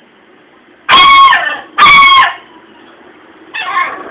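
A dog giving three short, high-pitched cries: two loud ones about a second apart, then a fainter one near the end.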